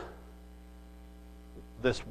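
Steady electrical mains hum, a faint low buzz of even tones, heard through a pause in a man's speech. His voice trails off at the start and he says one word near the end.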